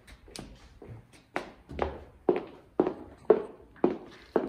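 Footsteps on a wooden floor at a steady walking pace, about two steps a second, growing louder about a second in.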